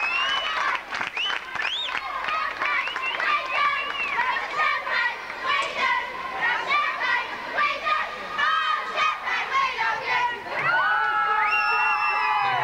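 An audience cheering and shouting, with many high-pitched voices calling out in short, overlapping whoops and shouts. A few longer held notes rise out of it near the end.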